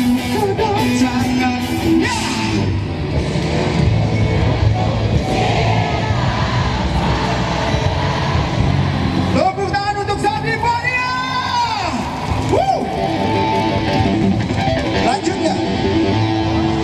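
Live pop-rock band playing through a concert PA: electric guitar and drums, with vocals over them. About ten seconds in, a single voice holds a long note that bends up and down.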